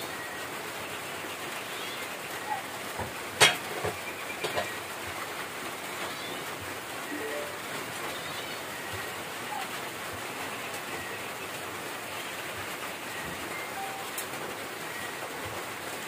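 Steady hiss of a pot of beef soup simmering over an open wood fire, with a sharp knock about three seconds in and a few fainter clicks just after.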